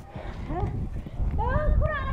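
Women's voices crying out and pleading in a local language, high and wavering, in two short outbursts, over a low rumble on the microphone.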